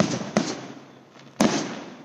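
Aerial firework shells bursting: two sharp booms in quick succession at the start and a third about a second and a half in, each dying away over a fraction of a second.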